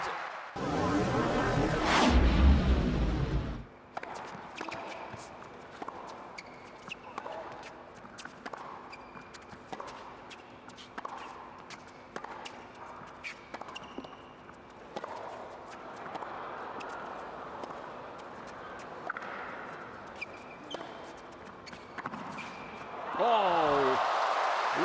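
A tennis rally on an indoor hard court: racquet strikes, ball bounces and short shoe squeaks in a quiet arena. It comes after a loud burst of noise in the first few seconds, and a voice begins near the end.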